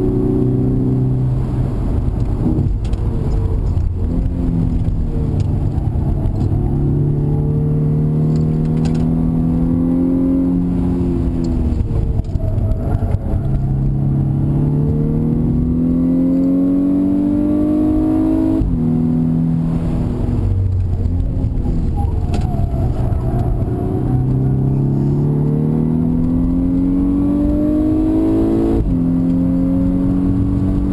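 2011 VW Golf VI R's turbocharged 2.0-litre four-cylinder heard from inside the cabin under hard acceleration. Its pitch climbs steadily for several seconds at a time and drops sharply at upshifts, twice in the second half, over a constant rumble of road and wind noise.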